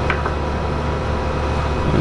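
Steady hum of electronic test equipment and its cooling fans: a constant low drone with several thin steady tones above it, and a brief faint chirp right at the start.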